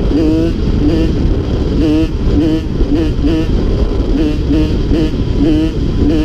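Honda CR85 two-stroke single-cylinder engine under way on a dirt trail, its pitch rising and falling in quick swells about twice a second, over a steady low rumble of wind on the microphone.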